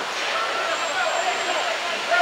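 Spectators in the arena stands, a steady murmur of many overlapping voices.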